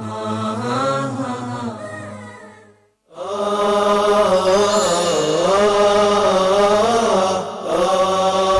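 Chanted vocal music in the style of a nasheed: a sung melody fades out about three seconds in, and after a brief silence a second, louder chanted passage begins and carries on.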